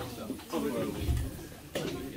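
Several people talking quietly in a small room, indistinct background chatter, with a soft low thud about a second in.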